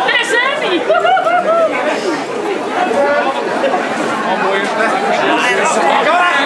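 Crowd chatter: many people talking at once, with no single voice standing out, at a steady loud level.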